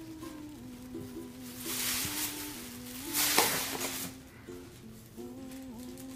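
Tissue paper rustling as it is pulled from a gift bag, in two bursts, the louder one a little past the middle, over soft music with a slow melody of held notes.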